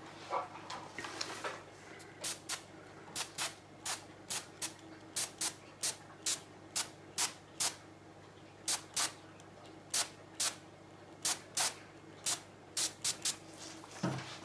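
Short bursts of air from an airbrush, blown at wet resin to push it out into thin jellyfish legs. A couple of dozen quick puffs, many in pairs, with short pauses between.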